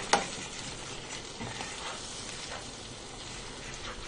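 Scrambled eggs sizzling in a frying pan while being stirred with a utensil, with a couple of sharp clicks of the utensil against the pan right at the start over a steady hiss.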